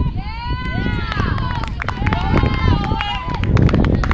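Low rumble of wind buffeting the microphone, with several overlapping high-pitched calls that rise and fall, each about half a second to a second long.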